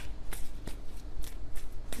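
A tarot deck being shuffled by hand, a run of soft card sounds with several short clicks.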